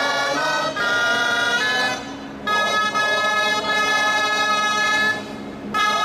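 Wind instruments play a slow melody of long held notes, with a short break about two seconds in and another near the end.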